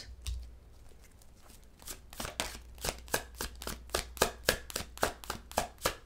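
Tarot cards being shuffled by hand: rapid crisp card slaps, about five a second, starting about two seconds in after a quieter stretch of handling.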